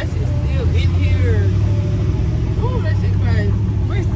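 Steady low rumble of a car on the move, heard inside the cabin, with a few quiet voice fragments over it.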